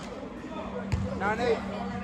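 A single basketball bounce on the gym floor about a second in, followed by a brief distant voice over a steady low hum.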